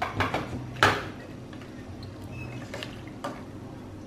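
Stainless steel ladle clinking against a stainless steel pot while stirring pineapple pieces in sugar syrup. There are a handful of sharp clinks, the loudest about a second in.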